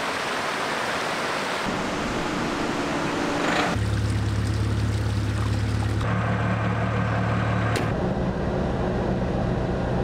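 Water rushing over shallow rocky rapids, giving way a few seconds in to a car engine idling with a steady low hum.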